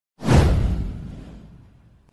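An intro whoosh sound effect with a deep boom: it starts suddenly a moment in, with a downward-sweeping swish, then fades out over about a second and a half.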